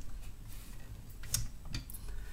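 A few light, irregular clicks and taps from small parts being handled at the base of a digital microscope stand.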